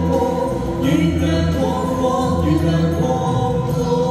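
A man and a woman singing a duet into microphones over amplified backing music, in long held notes.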